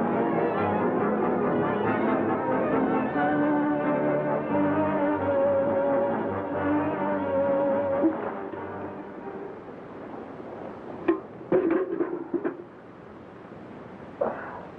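Orchestral film score with brass holding long notes, fading out about two-thirds of the way through. Near the end comes a brief burst of a bucket of water splashing over a man knocked out on the ground.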